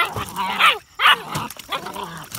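German Shepherd puppies crying and barking at each other as they play-fight in a pool of water, a run of short cries that rise and fall in pitch, with water splashing.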